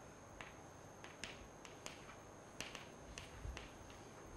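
Chalk on a blackboard while a line is drawn and words are written: a faint, irregular string of short, sharp clicks and taps.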